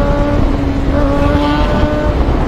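Sport motorcycle engine running at a steady pitch while riding at speed, over loud low wind rush on the microphone.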